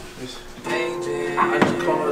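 A music track played back over studio speakers, starting about two-thirds of a second in with steady held notes and a sharp hit near the end.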